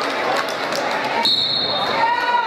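A wrestling referee's whistle, one short shrill steady blast a little past halfway, over spectator chatter and scattered sharp squeaks and knocks in a gym.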